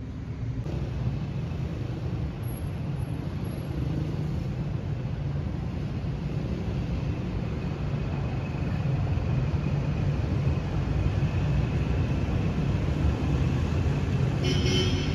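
Steady city road traffic: the low rumble and tyre noise of passing cars, growing a little louder about nine seconds in.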